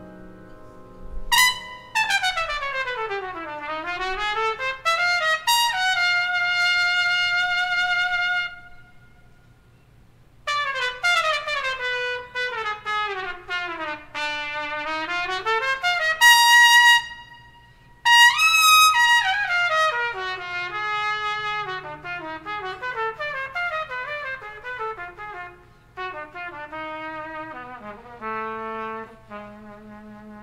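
Jazz trumpet playing a solo ballad passage: quick runs that sweep down and climb back up, alternating with held notes. The line breaks off briefly about a third of the way in and again just past the middle.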